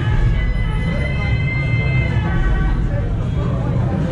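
Temple procession music: a shrill reed horn (suona) playing held notes, one long high note near the middle, over crowd voices and a steady low rumble.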